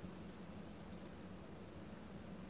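Faint crackling fizz from a Bodum Pebo vacuum coffee maker in roughly the first second, as its cooling lower chamber sucks the brewed coffee back down through the filter, over a low steady hum.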